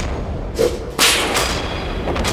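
Dramatic edited sound effects: swishing whooshes, with a sudden whip-crack-like hit about a second in, the loudest moment, over a steady low drone.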